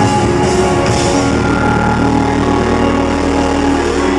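A live pop-rock band playing loudly, with the drum kit's cymbals splashing about half a second to a second in over sustained bass and guitar.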